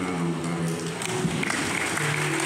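A man's voice singing long, held notes, each sustained for most of a second.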